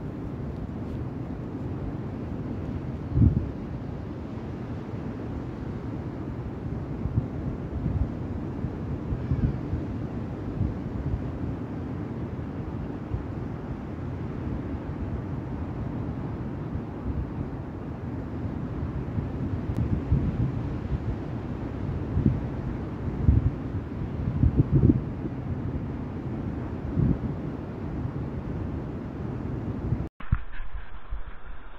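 Wind buffeting the microphone over the wash of breaking surf, with a few louder gusts thumping on the mic.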